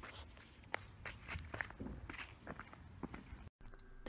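Faint, irregular footsteps with light clicks on pavement, cutting off abruptly about three and a half seconds in.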